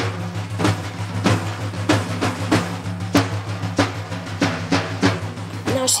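Persian daf frame drums, skin heads struck by hand, playing a steady rhythm of sharp strikes about three times a second over a low sustained hum.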